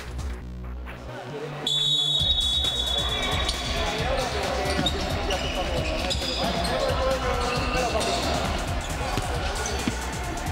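Music for the first couple of seconds, then the live sound of a futsal match in an echoing sports hall: the ball knocked and bounced on the wooden court and players shouting. Just after the cut there is a steady high tone lasting about two seconds.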